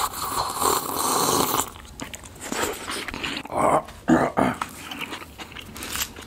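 Long slurping sips of a drink from a paper cup, followed about halfway through by several short, throaty gulps and exhales.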